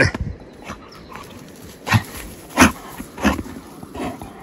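A black dog carrying a retrieving dummy in its mouth makes three short sounds, about two-thirds of a second apart, between two and three and a half seconds in.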